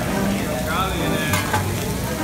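Fried rice and vegetables sizzling steadily on a hot steel hibachi griddle while a metal spatula stirs through the rice, with a few short clicks of the spatula on the steel in the second half.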